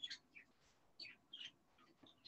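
Near silence, broken by a few faint, brief high-pitched chirps.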